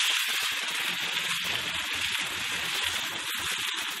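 Sausages sizzling in hot oil in a homemade steel plough-disc wok: a steady, crackling hiss.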